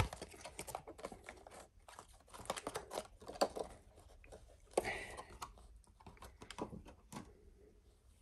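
A pair of socks being taken out of their clear plastic packaging by hand: irregular crinkles and small clicks of the plastic, with a louder burst about five seconds in.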